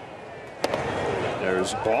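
A baseball fastball smacking into the catcher's mitt once, about two-thirds of a second in, with stadium crowd noise after it.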